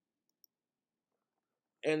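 Near silence with one faint click about half a second in; a man's voice starts near the end.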